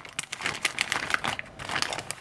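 Thin clear plastic bag crinkling and crackling in the hands as it is handled to get the soldering-iron stand out, a quick irregular run of sharp crackles.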